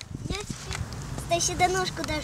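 A child's high-pitched voice speaking or calling briefly in the second half, over a low steady rumble.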